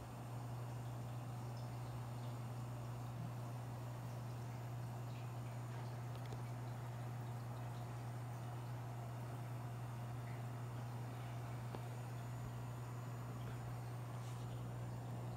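Aquarium filter running: a steady low hum with faint water noise.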